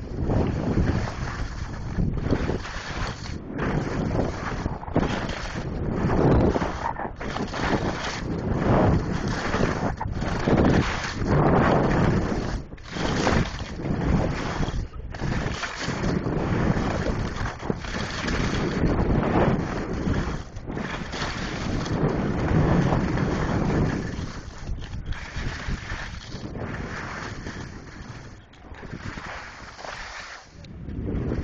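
Wind rushing over a phone's microphone while skiing downhill, buffeting in uneven surges. It eases off over the last few seconds as the skier slows.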